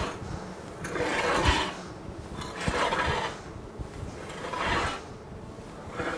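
Metal-tined malt rake dragged through a layer of germinating barley on a malting floor, turning the malt. It rasps in repeated strokes that swell and fade about every one and a half to two seconds.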